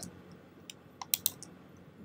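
A few faint computer keyboard key clicks, bunched together about a second in.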